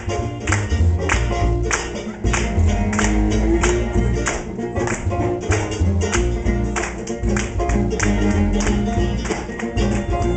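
Live acoustic string band playing an instrumental passage: fiddles, mandolin, five-string banjo and cello together, with a steady beat of strokes about twice a second.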